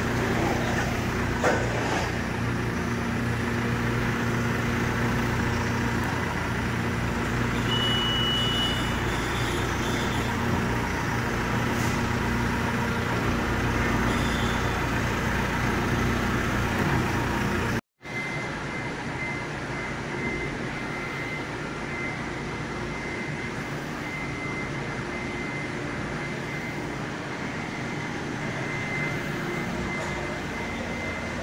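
Telehandler's diesel engine running steadily as its boom lifts a pallet load, with a short high beep about eight seconds in. After a sudden cut a little past halfway, a quieter steady hum with a thin high whine.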